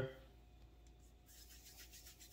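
Faint soft rubbing of palms rolling small flour-and-water dumplings.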